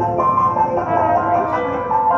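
Live improvised jazz: a trombone plays over electric keyboard, with a run of held notes that shift every fraction of a second.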